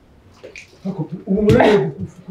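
A man's voice making strained, wordless vocal sounds, growing into a loud outburst about one and a half seconds in, as from effort on a heavy homemade concrete barbell.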